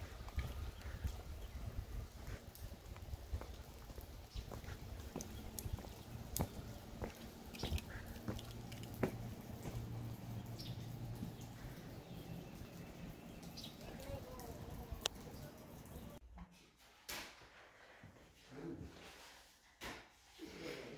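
Outdoor ambience with a low rumble and scattered footsteps and small clicks. About sixteen seconds in it drops suddenly to the much quieter room tone of a house interior.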